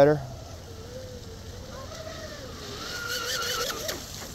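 The RC catamaran's Rocket 2948 3450kv brushless motor whining as the boat runs, its pitch wavering up and down with the throttle. Near the end the whine gets louder and higher, with a hiss of water spray.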